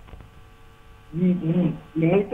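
Low, steady mains hum on a telephone line, with a voice starting about a second in.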